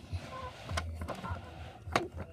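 Plastic toy cars pushed by hand along a plastic racetrack: a rolling, scraping rustle with a few clicks, the sharpest near the end.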